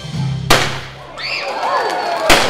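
A confetti cannon fires with a single sharp, loud bang about half a second in. The music stops about a second in, and children's voices rise up and down after it.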